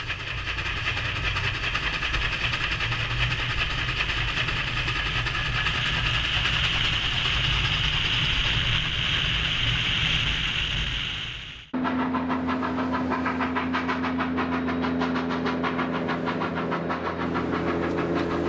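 Narrow-gauge coal-fired steam train running: a steady rush of moving-train noise that grows slowly louder. About twelve seconds in it cuts abruptly to a steady low hum with fast, even beats as the locomotive works up a grade.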